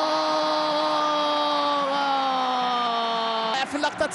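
A football commentator's long held goal cry: one sustained note that slowly falls in pitch, breaking into fast speech near the end.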